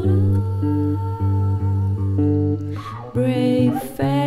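Music: a Fender Squier electric guitar holds sustained chords that change in steps over a low bass line, with soft layered vocals entering near the end.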